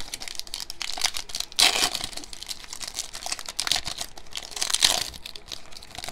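A foil trading-card pack wrapper crinkling and being torn open, with bursts of crackle about a second and a half in and again toward the end, amid the soft clicks of cards being handled.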